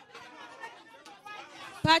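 Faint chatter and murmuring of the seated audience, then a man begins speaking loudly into the microphone near the end.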